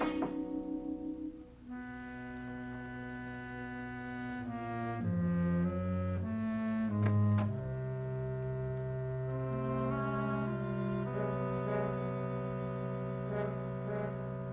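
Suspenseful background music scored for brass and woodwinds: long held notes over a low bass line that moves down and up in steps, with a few sharp accents midway.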